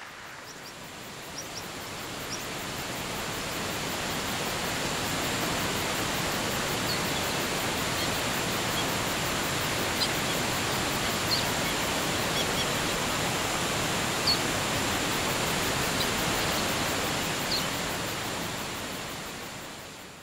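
Waterfall and rainforest ambience: steady rushing water that fades in over the first few seconds and fades out near the end, with scattered short bird chirps.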